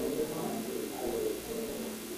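Indistinct, muffled voices talking in the background, no words clear.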